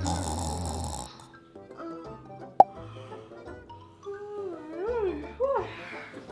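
Background music with a person snoring: a rasping snore in the first second, and a wavering, moan-like snore between about four and a half and five and a half seconds in. A single sharp click comes about two and a half seconds in.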